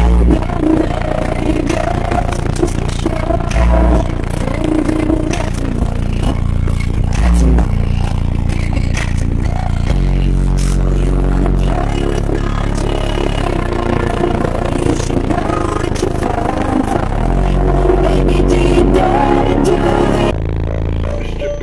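Very loud bass music played through four Sundown Audio ZV4 15-inch subwoofers, heard from inside the car: long, deep bass notes hold and change, and the cabin and the microphone rattle and crackle under the pressure.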